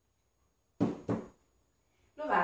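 Two sharp knocks about a third of a second apart, as a small ceramic plate is set down on the cloth-covered table.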